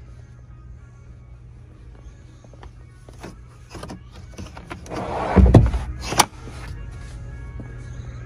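Toyota 4Runner's sliding rear cargo deck being released and slid back into the cargo area: a few handle clicks, a loud rolling rumble about five seconds in, then a sharp clunk as it latches. Background music plays throughout.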